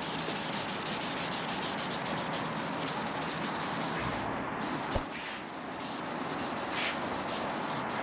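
Alcohol-wetted scrub pad rubbed back and forth over the black ceramic frit border of a new windshield, a steady scrubbing on glass. It is the cleaning of grease and fingerprints off the frit so the urethane will adhere.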